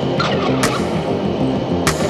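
Background music with a steady beat: sustained low notes and a sharp hit about every second and a quarter, with a warbling high sound in the first second.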